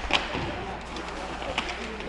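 Ice hockey game ambience in an arena: a steady low hum and a soft hiss of rink noise, with a faint knock or two from sticks or the puck.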